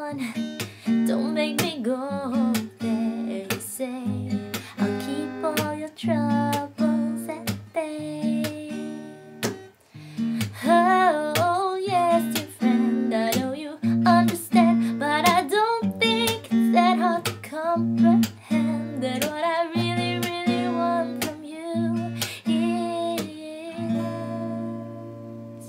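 Acoustic guitar strummed in a steady rhythm, with a melody line that bends in pitch over the chords.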